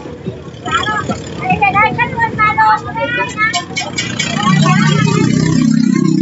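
A go-kart engine running loudly and steadily close by, coming in about four seconds in after a stretch of voices.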